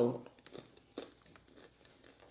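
Faint crinkling of a paper napkin being handled, with a few soft short clicks.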